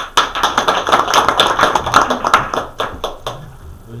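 A small group applauding: a burst of clapping that starts just after the beginning, thins out into a few last claps and stops about three seconds in.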